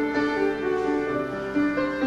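Slow instrumental worship music played on a keyboard: held notes and chords that shift step by step.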